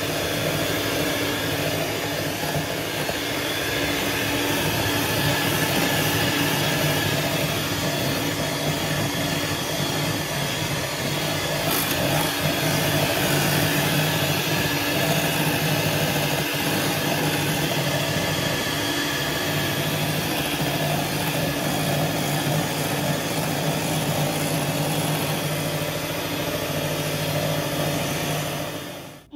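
Russell Hobbs electric hand mixer running at a steady speed, its beaters whipping double cream in a bowl.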